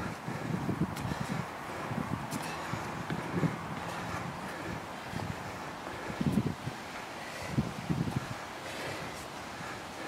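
Wind buffeting the microphone in uneven low gusts, strongest about six and eight seconds in.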